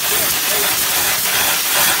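Steady, loud hiss of an AstraSteam Chemik steam jet cleaner's wand blasting a jet of steam onto a carpeted car floor mat.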